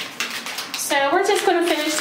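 Blue painter's tape being crumpled into a ball in the hands, crinkling and rustling for about the first second, just after being peeled off freshly caulked shower seams. A voice then starts speaking.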